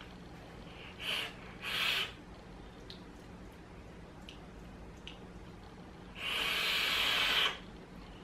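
Breathing while vaping an e-cigarette tube mod: two short breaths about a second in, then one long hissing breath of about a second and a half from about six seconds in, as vapor is blown out.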